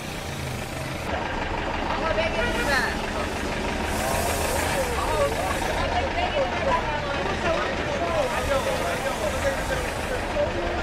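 Bus engine idling with a steady low rumble, under many people talking at once with no clear words.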